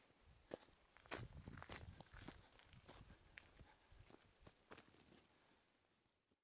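Faint footsteps of a hiker walking on a dirt and gravel track, about two crunching steps a second.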